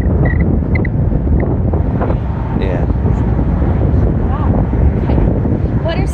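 Wind buffeting the microphone, a loud, steady low rumble, with brief faint bits of voice in it.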